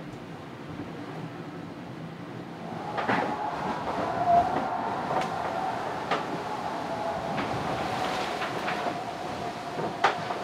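Inside the cabin of an IMOCA 60 ocean-racing yacht under way: a steady rumble of the hull moving through the sea, with scattered knocks and clatters. About three seconds in, the sound grows louder and a steady high whine joins it.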